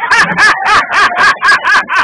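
A man laughing hard in rapid, evenly spaced bursts, about five a second.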